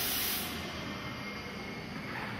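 Steady hissing noise of a running yarn creel and its tensioners, fairly quiet, with a faint high steady whine. It is slightly louder in the first half second.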